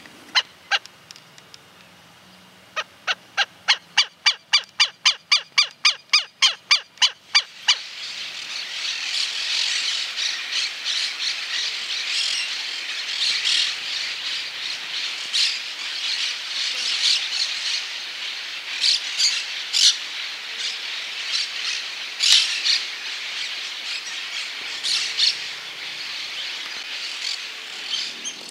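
Black-necked stilt calling: a rapid series of sharp yelping notes, about four a second, starting about three seconds in and lasting some five seconds. Then a dense, continuous chatter of many birds calling over one another.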